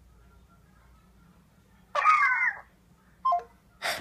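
Faint room tone, then a brief high-pitched exclamation, a voice coming through a phone's speakerphone, about two seconds in, with a shorter sound just after. Laughter starts near the end.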